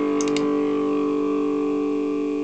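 A distorted electric guitar chord on a Washburn N4, played through a Carl Martin PlexiTone overdrive pedal into a Marshall JCM800 amp, sustains and slowly fades with the pedal's boost switched on. A few faint clicks come near the start.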